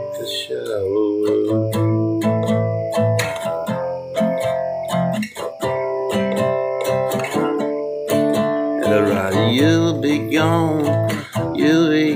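Acoustic guitar strummed steadily, an instrumental stretch between sung verses.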